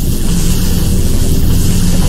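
Cinematic intro sound effect: a loud low droning rumble with a hiss above it, slowly building.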